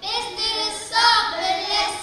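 A group of young boys singing together into a handheld microphone, in long held notes with a short break about a second in.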